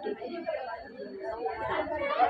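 Indistinct chatter: several people's voices talking over one another.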